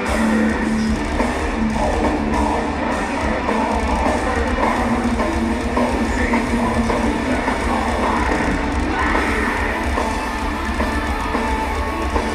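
Heavy metal band playing live in an arena, heard from the crowd: distorted electric guitars and a drum kit, loud and steady throughout.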